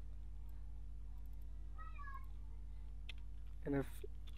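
Steady low hum throughout, with a brief, faint, wavering high-pitched call about two seconds in, and a man's voice saying one short syllable near the end.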